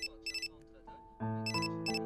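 A mobile phone ringing with an electronic ringtone of short high beeps in quick groups, over soft background music with sustained notes.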